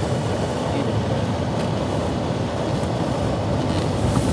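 Vehicle engine and tyres giving a steady, loud rumble as it drives over the gravel bank into a shallow river ford, heard from inside the cabin.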